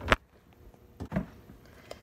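A sharp clack just after the start, then softer knocks about a second in: a front-loading clothes dryer's door being pulled open and handled.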